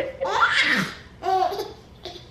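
Laughter in two bursts, the second shorter and about a second after the first.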